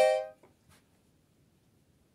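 Bayan (Russian chromatic button accordion) sounding one short chord on its right-hand keyboard, about half a second long.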